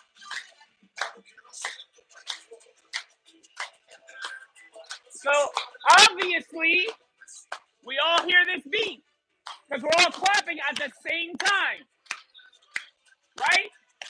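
A group of people clapping together on the beat, about one and a half claps a second, over salsa music from a loudspeaker. From about five seconds in, loud wavering melodic phrases of the music come to the fore.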